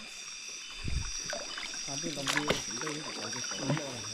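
Water sloshing and dripping around a small wooden boat on the water at night, with a few sharp knocks and splashes about halfway through. A steady high-pitched chorus of night insects runs underneath, and a low voice murmurs in the middle.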